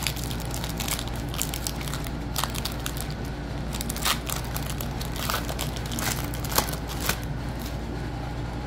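Foil wrapper of a Pokémon Lost Origin booster pack crinkling and tearing as it is opened by hand: a run of irregular crackles with a few sharper snaps.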